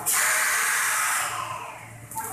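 A loud hiss like a spray that starts suddenly and fades away over about a second and a half.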